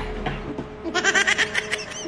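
A man laughing hard, a quick run of short high-pitched pulses starting about a second in.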